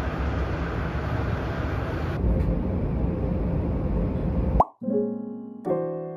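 A subway car's running noise: a steady, loud rumble that cuts off suddenly about four and a half seconds in, just after a brief rising tone. Soft electric piano music follows.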